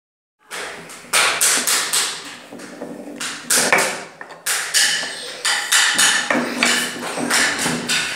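Wooden Montessori knobbed cylinders knocking against their wooden block and the tabletop as they are lifted out and set down: a quick, uneven series of sharp wooden taps.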